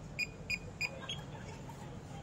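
Electronic key-press beeps from a bike-hire docking point's keypad as a release code is keyed in: three short beeps of the same pitch about a third of a second apart, then a slightly higher, fainter one a little after a second in.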